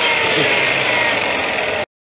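Black & Decker valve refacer's electric motor running with a steady high whine that drifts slightly down in pitch, cut off abruptly near the end.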